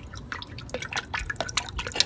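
Hot sauce dripping and spattering from a shaken bottle into a cup, in many quick, irregular drops.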